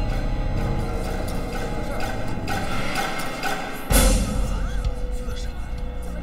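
Tense, suspenseful drama score with sustained tones. A sudden low drum hit lands about four seconds in.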